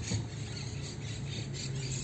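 Car cabin noise while driving slowly: a steady low engine hum with faint road noise.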